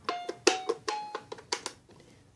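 Baby Einstein Count & Compose Piano toy playing about seven short electronic xylophone-voice notes as its keys are pressed one after another.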